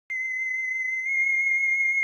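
A steady, high-pitched electronic tone, starting a moment in and holding one pitch with a slight waver.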